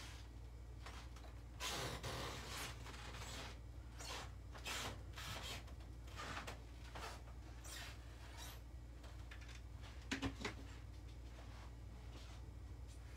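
Faint handling noises from hot-gluing a small wooden cutout: irregular soft scrapes and rustles, with a few sharper light clicks a little after ten seconds in, over a low steady hum.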